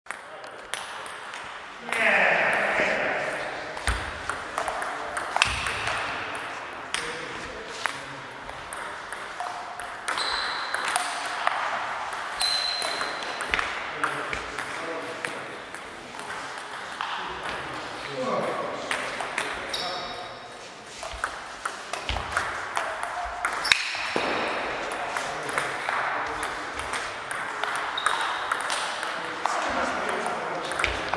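Table tennis ball clicking off bats and the table in quick, irregular strings of rallies, with pauses between points. A voice rises over the clicks now and then, loudest about two seconds in.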